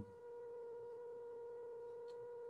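A faint, steady tone at a single pitch with fainter overtones above it, starting just after the speech stops and holding without change.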